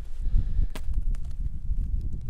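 A few sharp snaps and clicks of a single-use tape tourniquet being stretched and tied around an arm, the loudest a little before one second in, over a low wind rumble on the microphone.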